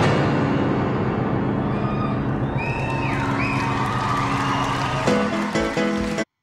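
Grand piano played live in a fast, dense run of notes, with a high whoop sliding in pitch about two and a half seconds in, then a few heavy struck chords near the end.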